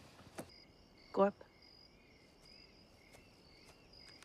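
Faint crickets chirping steadily in a night-time insect chorus, with a short spoken word about a second in.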